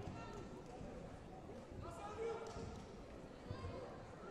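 Echoing sports-hall ambience: distant voices with a few dull thuds, one about two seconds in and another near the end.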